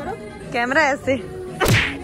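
A single short, sharp whip-like swish, a sound effect, about one and a half seconds in. Before it comes a brief wavering voice-like sound.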